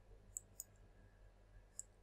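Near silence with three faint computer mouse clicks, two in the first second and one near the end.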